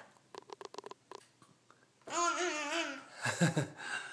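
A toddler babbling in a warbling voice whose pitch wobbles up and down for under a second, about two seconds in, followed by a short burst of laughter. A quick run of short clicks comes in the first second.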